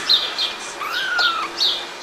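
Small birds chirping repeatedly in short, high calls, and about a second in one longer mew from a three-week-old kitten that rises and then falls.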